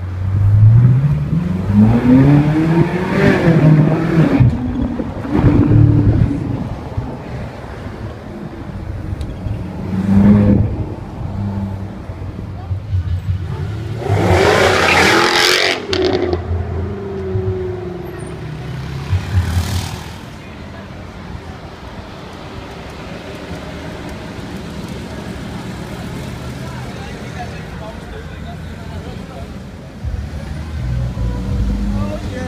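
Ferrari engine revving up through the gears, heard from inside the cabin, with rising pitch climbs in the first few seconds. About halfway through, another car's engine accelerates hard, its loudest surge rising then falling away. A quieter, steady engine rumble with street noise follows.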